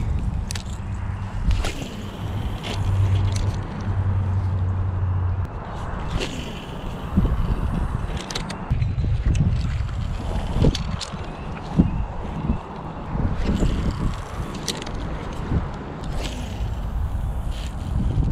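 Wind buffeting the action-camera microphone as a continuous low rumble, with a steady low hum for a couple of seconds about three seconds in. Scattered short clicks and knocks come from handling the rod and spinning reel.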